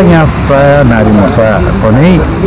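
Only speech: a man talking to the camera, over a faint steady low hum.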